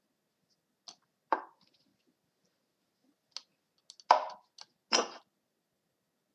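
A handful of short, sharp clicks and knocks as moves are made in a fast computer chess game. Three louder knocks come about a second in and twice near the end, with fainter clicks between them.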